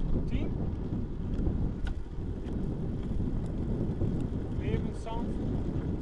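Wind buffeting the microphone of a handlebar-mounted camera on a moving road bike, over the steady rumble of its tyres on rough asphalt. A few short rising chirps come in about five seconds in.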